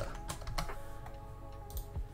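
Computer keyboard typing: a few separate keystrokes, with one more near the end.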